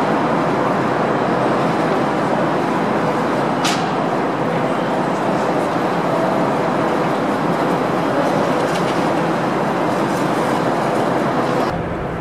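Steady rushing background noise of an underground station, with a single faint click about four seconds in.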